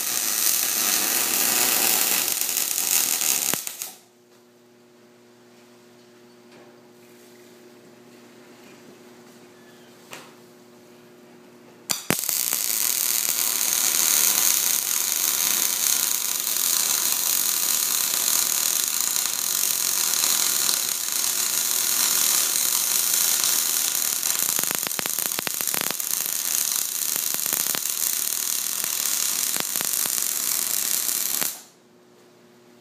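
MIG welding arc on steel pipe, a steady crackling sizzle. A short bead in the first few seconds is followed by a pause with a steady low hum. A long continuous bead starts about 12 seconds in and runs on. The welder says the weld is running hot and could use a little more wire feed, going by the sound.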